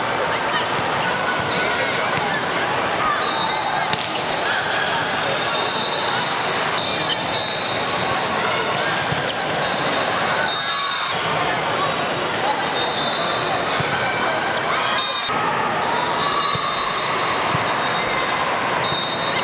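Volleyball game noise in a large hall: balls being struck and bouncing on the courts, short high-pitched squeaks at intervals, and a steady chatter of players and spectators.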